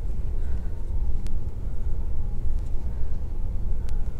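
A steady low rumble, with a few faint clicks and soft strokes of a dry-erase marker being drawn across a whiteboard.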